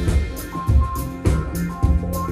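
Live band playing, a Ludwig drum kit keeping a steady beat of kick-drum hits about twice a second with cymbals, under held keyboard and guitar notes.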